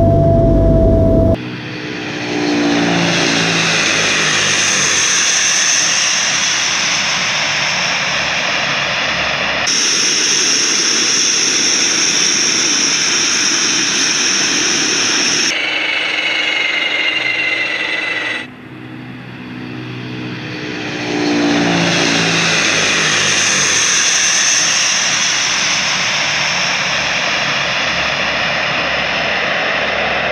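Tupolev Tu-95's four Kuznetsov NK-12 turboprop engines and contra-rotating propellers running loud as the bomber rolls along the runway. The tone sweeps up and down as it passes close by. The sound changes abruptly several times where shots are joined.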